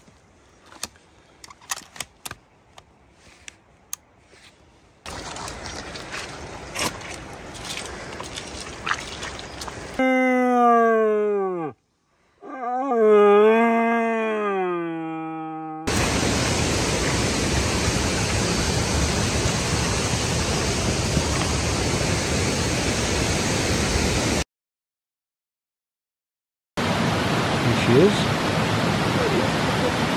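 Two long, deep roars with a falling pitch, each a couple of seconds long, from a red deer stag roaring in the rut. Before them come scattered metallic clicks from a rifle being handled and rustling steps. After them comes a loud steady rushing noise, broken by a brief gap.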